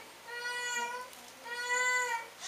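A baby crying in repeated wails, each about half a second long, with short breaks between them.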